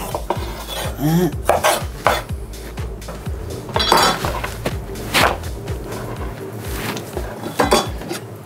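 Chef's knife cutting cherry tomatoes on a wooden chopping board: a quick run of short knocks of the blade on the board, broken by a few louder scraping strokes as the cut pieces are gathered up.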